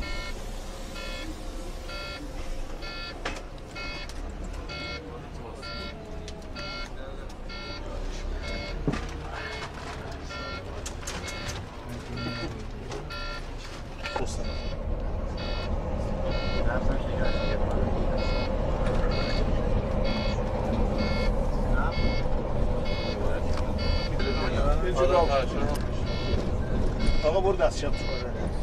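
An electronic warning beeper on a moving coach beeps steadily, about one and a half short beeps a second, over the low rumble of the bus engine.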